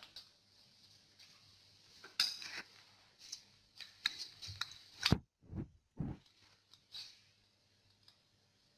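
Multimeter test-lead clips being handled and fitted to a pressure transmitter's terminal block: irregular small clicks and metallic clinks, starting about two seconds in and lasting some five seconds, the sharpest a little past the middle.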